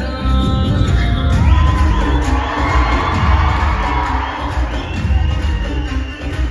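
Indian film dance song playing loud over a hall sound system, with a heavy bass beat. An audience cheers and whoops over the music from about a second and a half in until near the end.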